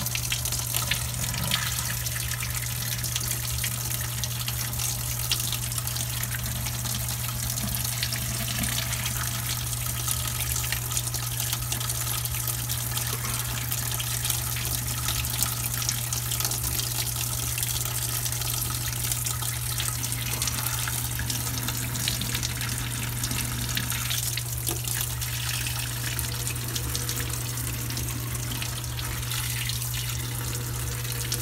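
Dirty carpet-cleaning wastewater pouring steadily from a hose onto a floor drain, splashing and foaming, with a steady low hum underneath.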